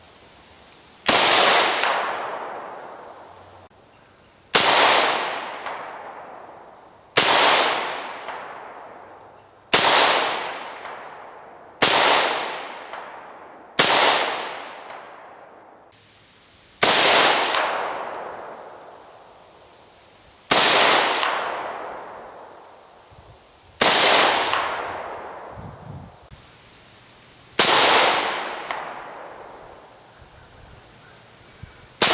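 Ten rifle shots from a Bushmaster AR-15 Varminter with a 24-inch barrel firing .223 Remington (Fiocchi 55 gr full metal jacket), spaced two to four seconds apart. Each is a sharp crack followed by a long fading echo.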